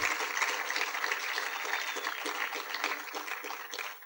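Audience applauding, the clapping slowly fading.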